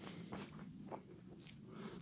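Faint footsteps on a dirt forest path, a few soft scuffs in two seconds.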